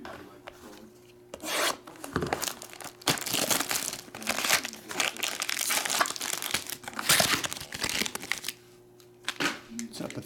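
Foil wrapper of a trading-card pack crinkling and rustling as it is handled, a loud run of several seconds starting about three seconds in.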